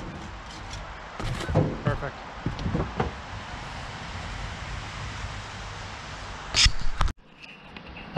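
A few light knocks and handling noises of a wooden 2x4 stake against the steel side of a dump trailer, over steady outdoor background noise, with one short sharp noise near the end.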